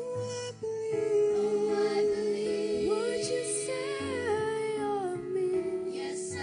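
Children's choir singing a slow song in harmony, with long held notes.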